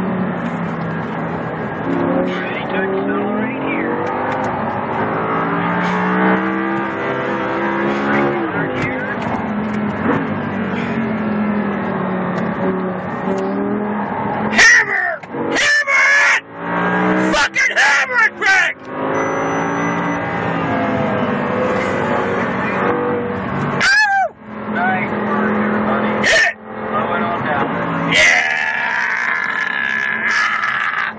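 Audi R8's V10 engine heard from inside the cabin at track speed, its pitch repeatedly climbing and dropping as it revs up and eases off through the corners. A few loud, sudden noises break in about halfway through and again a little later.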